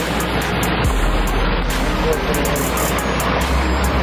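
Water running and splashing down a shallow rock-lined stream over small waterfalls: a steady rushing sound.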